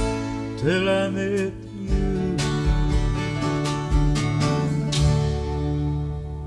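Country band playing live: acoustic guitars, fiddles and drums under a short sung phrase about a second in, then the band holding a closing chord that rings and starts to fade near the end.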